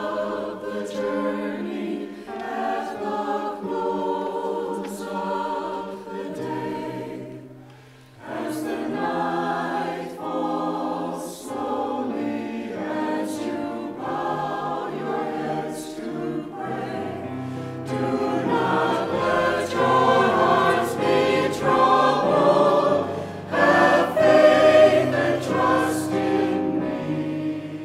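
Mixed choir singing in parts. The sound dips briefly about eight seconds in, then grows fuller and louder in the second half.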